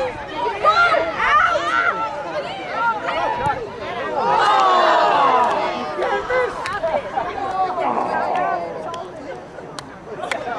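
Several people shouting and calling out across a soccer field, their voices overlapping into unintelligible chatter, loudest and busiest about four to six seconds in.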